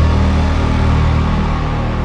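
Dark, ominous film-score sound design: a loud, deep low drone with a noisy wash over it. It hits just before the skyline shot and eases off slowly.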